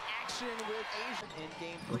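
Televised basketball game sound at low level: a steady arena crowd murmur under a play-by-play commentator's voice, with sounds of play on the hardwood court.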